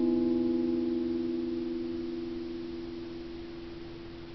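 The final chord of an acoustic guitar ringing out and slowly dying away, several notes sustaining together with no new strum.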